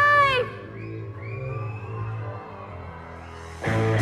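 Live band's opening: a low sustained drone, starting with a short, loud wavering high note. The full band comes in loudly near the end.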